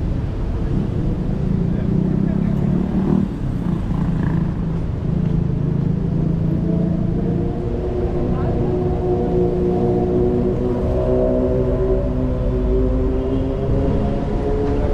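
Road traffic passing on a city street: car and motorcycle engines running over a steady low rumble of tyres. From about halfway through, a steady engine drone with several pitched tones comes to the front.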